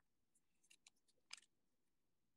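Near silence, with a few faint short clicks in the first second and a half as a hand handles a trading card, just before it is slipped into a plastic sleeve.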